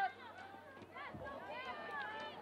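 Distant voices of players and spectators calling and shouting across the field during play, too far off to make out words.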